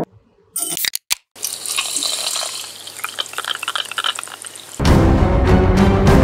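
Liquid being poured and fizzing in a glass, a crackly hiss of many fine pops. Loud music comes in near the end.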